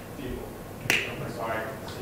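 A single sharp click about a second in, the loudest sound here, with a man's brief speech over a microphone around it.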